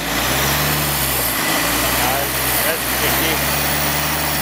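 Mitsubishi Triton ute's engine brought up to raised revs under load as it tries to drive forward on a muddy climb. The revs rise just after the start and then hold fairly steady. Its rear locker is still engaged, which keeps brake traction control off on the front axle.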